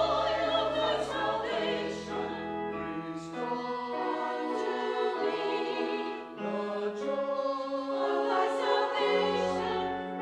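Church choir of men and women singing a slow anthem in parts, the chords changing every second or so over long held low notes.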